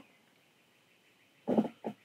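A man's short, quiet laugh: a quick run of four or five brief breathy voice pulses starting about a second and a half in.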